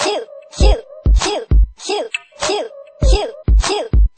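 A sparse jerk-style hip-hop beat: a deep 808 kick hits about twice a second in an uneven, bouncing pattern, with the same short squiggly pitched sample sounding on each hit.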